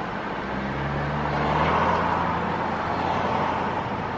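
Car engine and road noise heard from inside the cabin while driving in city traffic, with a low engine hum that comes in about half a second in and swells briefly around two seconds.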